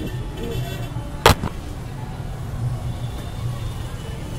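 Steady outdoor hubbub of distant voices and traffic, with one sharp, loud crack a little over a second in.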